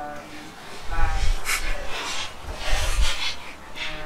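Breathy hisses and rubbing handling noise close to the microphone, with low thumps, as hands move about right by it.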